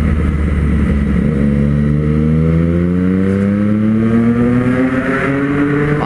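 Triumph 765 cc three-cylinder motorcycle engine accelerating hard. Its pitch rises steadily for about four seconds from just over a second in, then steps down near the end as the rider shifts up.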